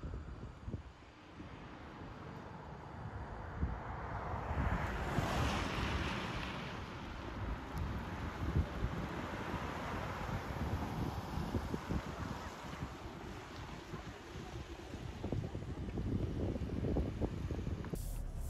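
Wind buffeting an outdoor microphone, with a hiss from the tyres of a compact SUV driving on wet asphalt that swells about four seconds in and fades after about nine seconds.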